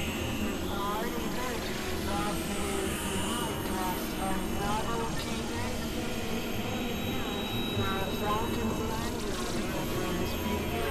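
Experimental electronic drone music from synthesizers: a dense, steady wash with recurring warbling pitch chirps in the middle and thin high held tones above.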